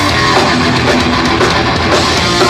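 Hardcore punk band playing live: electric guitar, bass guitar and drum kit at full volume in a steady, dense wall of sound.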